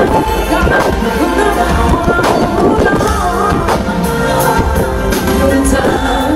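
Live concert music heard loud through a smartphone's microphone: a band with a singer, heavy steady bass underneath.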